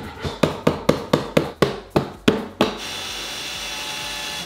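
A hammer tapping on a wooden drawer box, about four quick knocks a second. About two and a half seconds in the knocking stops, and a cordless drill starts running steadily as it bores into the drawer front.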